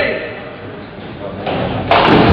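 Ninepin bowling ball rolling down the lane, growing louder, then a sudden loud crash near the end as it strikes the pins, echoing in a large hall.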